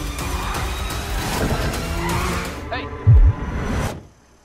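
Film trailer soundtrack: music mixed with car-chase sound of cars driving fast, a shouted "Hey!", and a heavy low thump about three seconds in. It cuts off suddenly at the end.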